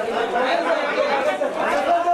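Chatter of several people talking at once, the voices overlapping with no pause.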